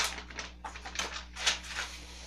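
Hand rummaging through a container of small objects in search of a pipe tamper: a quick, uneven run of small clicks, knocks and rustles.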